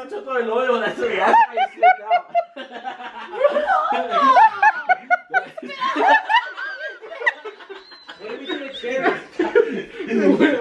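Several people laughing hard and crying out over one another, with a woman's high shrieks among the laughter.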